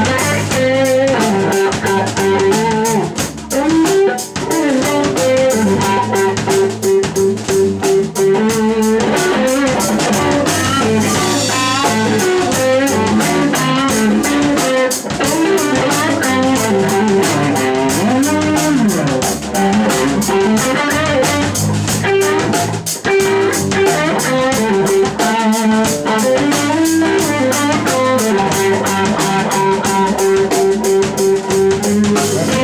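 Live blues band playing: electric guitar over bass guitar and drum kit, with some guitar notes bending in pitch.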